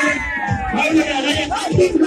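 Loud music with a repeating drum beat, mixed with a crowd of high, gliding shouting voices.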